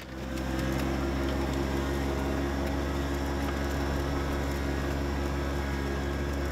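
John Deere 1025R compact tractor's three-cylinder diesel engine running at a steady speed, pulling a one-row corn planter unit through tilled soil.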